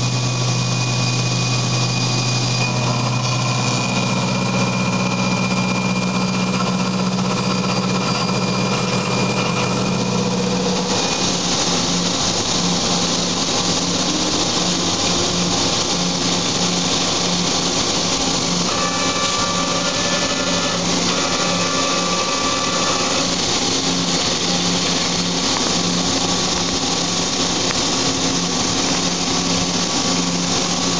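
CNC milling machine cutting an aluminium part with an end mill: a steady machining hum over a high hiss. About 11 seconds in the hum shifts higher and takes on an even pulsing as the cut changes.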